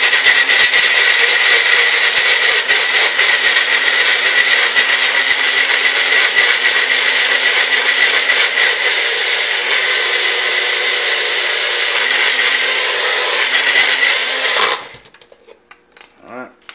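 Magic Bullet personal blender running steadily with a high whine, pureeing fresh salsa ingredients. It cuts off abruptly near the end.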